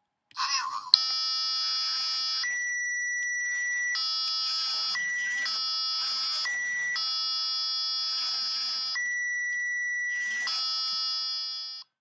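A LEGO Mindstorms brick's speaker playing a steady electronic tone that flips back and forth between a lower, buzzy tone and a higher, purer tone eight times as the motor's beam is turned in and out of the programmed rotation-sensor range: the high tone signals the beam is inside region A, the low tone that it is in region B. A short sound and a click come just before the tones start, and the tone cuts off suddenly near the end.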